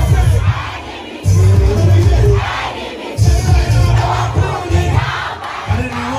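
Large crowd of students shouting and singing along to loud, bass-heavy music on a sound system. The bass drops out briefly about a second in and again near three seconds, leaving the crowd's voices on their own.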